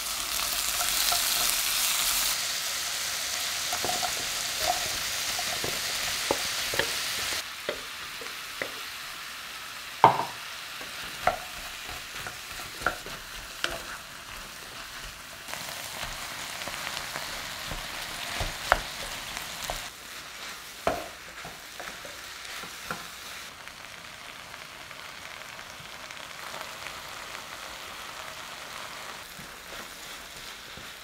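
Shrimp, egg and vegetables sizzling in a frying pan, loudest over the first few seconds, then settling to a quieter steady frying. A spatula stirs the fried rice, with scraping and a number of sharp knocks against the pan.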